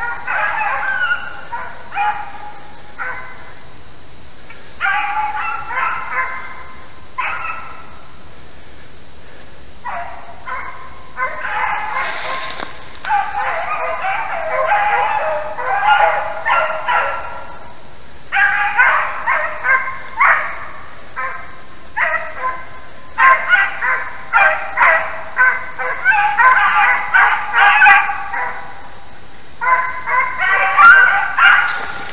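Hunting beagles baying on the trail of a hare, in bursts of repeated cries with short pauses between them. The baying grows denser and louder in the second half.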